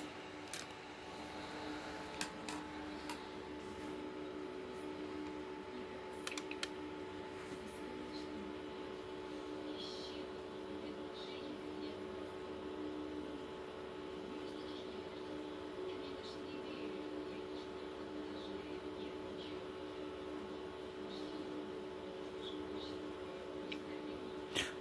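A sharp click as a crocodile clamp is snapped onto a car battery terminal, then a steady low electrical hum with a few faint clicks in the first several seconds.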